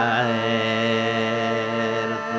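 Thracian folk music: a gaida (Thracian bagpipe) sounding a steady drone under long held notes, just after a sung line ends.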